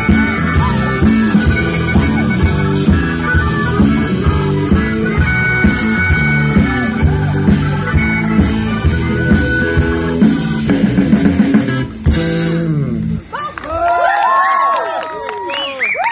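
Live blues-rock band playing an instrumental passage with drums, bass and electric guitar keeping a steady beat. The band stops about three seconds before the end, leaving a few seconds of sliding, wavering high tones.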